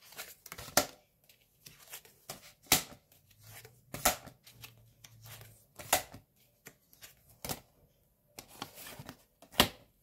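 Tarot cards being dealt one by one onto a desk: a crisp card snap every one to two seconds, about six in all.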